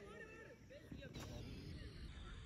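Faint open-air ambience at a cricket ground with distant, indistinct voices.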